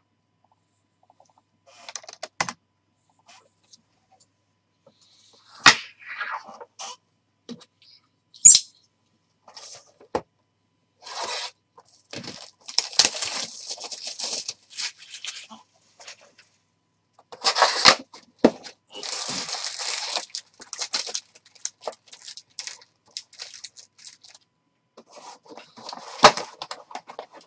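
Plastic wrap being torn and crinkled off a sealed Panini Prizm trading card box as the box is opened. The sound comes in scattered crackles with sharp clicks and taps on the cardboard, and two longer spells of rustling in the middle.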